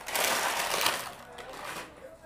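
Crinkly rustling of craft packaging being handled, loudest in about the first second and then fainter.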